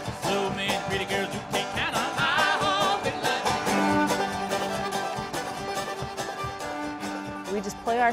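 Old-time string band music played live, with a strummed resonator guitar keeping a steady rhythm under a sung, wavering melody line.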